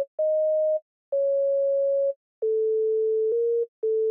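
Single notes of a plain synth tone sounding one at a time as they are clicked into a piano roll in FL Studio. There are about five mid-pitched notes, each held from a fraction of a second to about a second with short gaps between, mostly stepping down in pitch, and each starts and stops with a small click.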